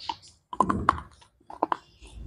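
Close-miked crunchy chewing of a white KitKat wafer bar: crisp crunches in irregular clusters, one right at the start, a quick group about half a second in, and another pair near the end.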